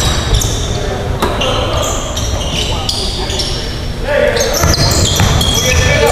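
A basketball being dribbled and sneakers squeaking on a hardwood gym floor during a full-court game, with the ball's bounces and the squeaks echoing around the gym. Short high squeaks come in clusters, thickest in the second half.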